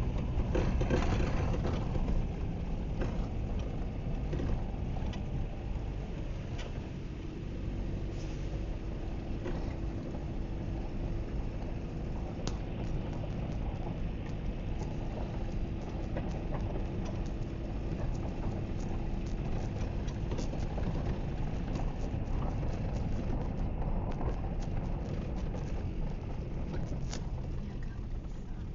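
A car driving along a rough, rutted dirt road, heard from inside the cabin: a steady low rumble of engine and tyres, with frequent small knocks and rattles as it goes over the bumps.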